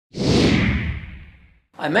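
A whoosh sound effect that comes in suddenly with a low rumble, then slides down in pitch and fades away over about a second and a half.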